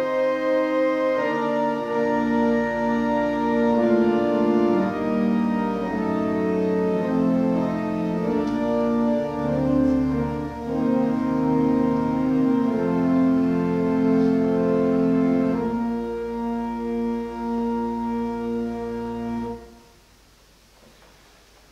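Church organ playing slow, sustained chords over deep pedal bass notes, cutting off abruptly just before the end.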